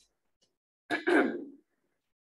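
A woman clears her throat once, a short rasp about a second in.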